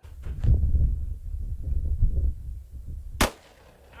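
A single gunshot from a small FP-45 Liberator pistol, a short sharp crack about three seconds in, over a low wind rumble on the microphone.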